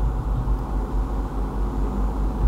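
Steady low background rumble, with no clicks or other distinct events.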